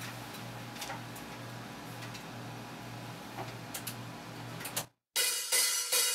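Low, steady electrical hum with a few faint clicks as a track is cued up at a studio desk. About five seconds in the sound cuts out briefly, and then a song starts quietly.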